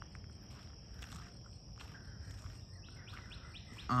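Insects hold a steady high-pitched trill, and from near the end a bird gives a rapid run of short repeated chirps, about four a second.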